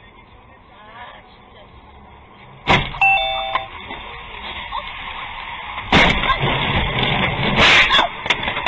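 Dashcam recording of a road crash: steady road noise from inside the car, then a sudden loud bang about two and a half seconds in, followed by a short electronic beep from the dashcam, ongoing noise, and two more heavy impacts about six seconds in and near the end.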